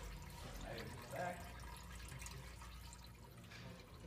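Coolant trickling steadily out of the 1965 Mustang radiator's bottom drain petcock into a catch pan, faint.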